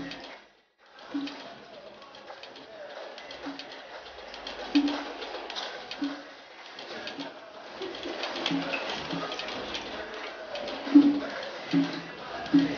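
A bird cooing over and over in short low calls, about one a second, over a steady background hiss.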